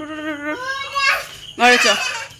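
A young child's voice shouting and calling without clear words: a held call, then one that rises high in pitch about a second in, and another strong call near the end.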